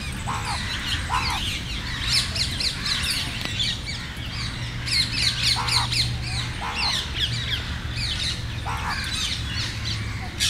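A flock of rose-ringed parakeets chattering without a break: many short, shrill calls overlapping. Lower, shorter calls break in every few seconds, over a steady low hum.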